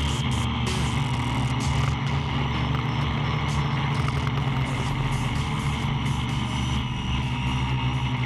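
Quadcopter's electric motors and propellers buzzing steadily in fast, low flight, heard through the onboard camera.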